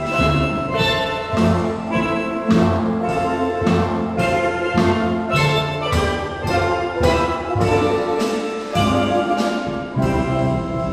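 Steel drum band playing a piece: steel pans of several ranges ringing out melody and chords over deep bass pans, with a steady beat.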